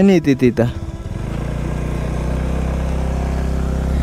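Motorcycle engine idling with a steady, low, even hum, starting about a second in after a few spoken words.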